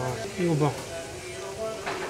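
A short falling vocal exclamation about half a second in, over faint background music, with a single light click near the end.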